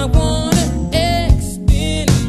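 Slow 1990s R&B ballad: a wavering sung melody with vibrato over a steady, regularly struck drum beat and sustained low accompaniment.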